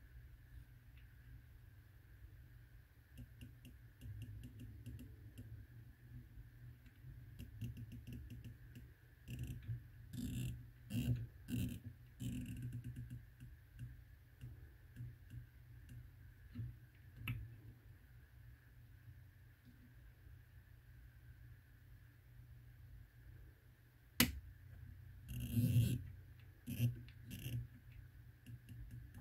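Rifle scope elevation turret with 0.1 mrad clicks being turned by hand: a long run of small, quiet detent clicks, with a few louder handling noises about ten seconds in and again near the end.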